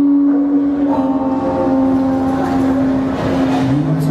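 Live acoustic guitar music with one long note held steady, and a man's voice starting to sing near the end.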